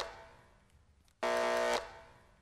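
Electric buzz of a neon sign flickering on: the fading tail of one buzz, then a second steady buzz about a second in, lasting just over half a second before dying away.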